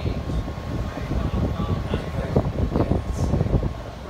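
Rumbling, rustling handling noise from a phone's microphone as the phone is moved about and rubbed against clothing, with many short, uneven low thumps.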